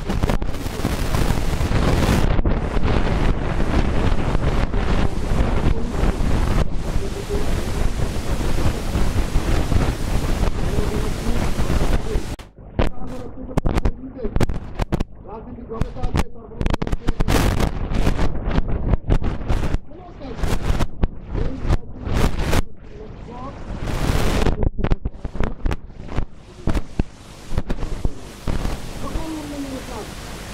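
A man giving a speech in Bengali into a handheld microphone. The sound is loud and rough, with a dense rumbling noise over the speech for about the first twelve seconds; after that the speech comes in broken phrases with short pauses.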